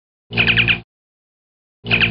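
A repeated sound effect laid under title cards: identical bursts about half a second long, each a rapid fluttering chatter over a steady low hum, repeating about every one and a half seconds with dead silence between them.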